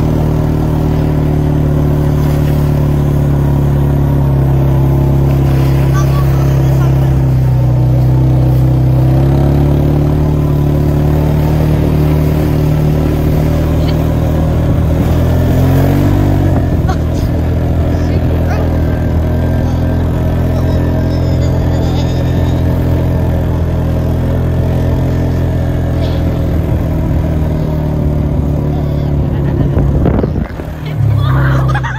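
ATV engine running at a steady throttle while towing a sled, its pitch dipping briefly about eight seconds in and wavering again around sixteen seconds.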